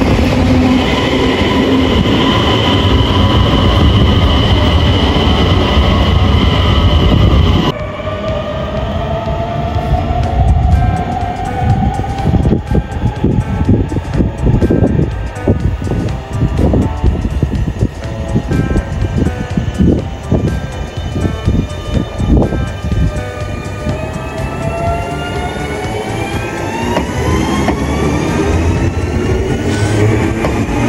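Skånetrafiken electric multiple units (X31k and X61) running past station platforms. First a steady electric hum with a high whine; after a sudden change, an X61 gives a slowly rising motor whine with a quick run of wheel clicks over rail joints. Near the end another rising whine as a train gathers speed.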